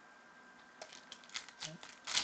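Trading-card pack's foil wrapper crinkling and tearing as it is opened by hand, a quick run of short crackles starting about a second in.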